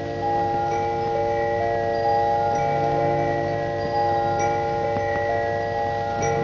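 Film background music of overlapping, sustained bell-like tones, a new note entering about every half second to a second and ringing on under the others.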